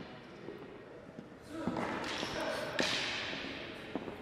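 Wooden fighting canes knocking a few times during a canne de combat exchange, with a swell of hissy noise from about a second and a half in that fades away near the end.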